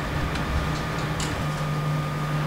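Classroom room noise during a silent pause: a steady low hum with a faint higher tone, and a few faint ticks around the middle.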